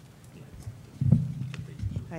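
Handling noise on a table microphone: a sudden low thump about a second in, then a few dull knocks and rumbles, after a quiet stretch of room tone.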